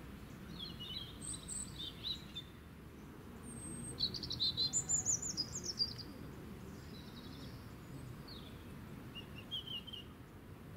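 Small songbirds singing in short, high chirping phrases, with a louder, rapid song lasting about two seconds midway, over a steady low background rumble.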